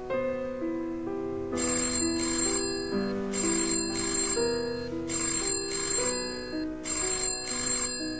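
Soft keyboard music plays throughout, and about a second and a half in a telephone starts ringing in pairs of rings, four pairs about a second and a half apart.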